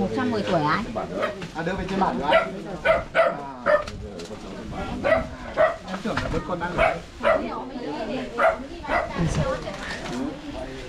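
Dog barking repeatedly, short sharp barks coming less than a second apart, with people's voices mixed in.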